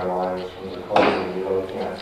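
A person speaking, with words the transcript did not catch; the voice gets louder about a second in.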